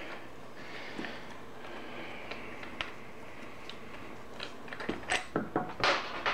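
Quiet tool work on a motorcycle's rear wheel hub as a wheel bolt is unscrewed: low handling noise with a few faint clicks, then several sharp metallic clicks and knocks in the last second or two as the bolt comes free.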